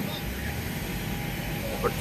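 Steady low rumble with a faint constant hum, ending with a man starting to speak near the end.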